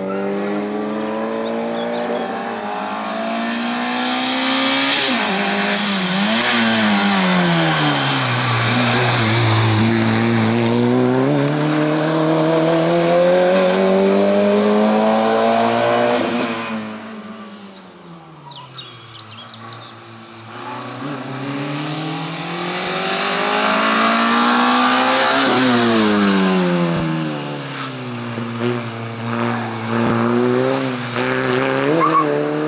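A slalom race car's engine being driven hard, revs climbing and dropping again and again as it accelerates, shifts and lifts off between the cones. It falls quieter for a few seconds about two-thirds of the way through, then comes back loud as the car arrives and revs up and down through the cone chicane.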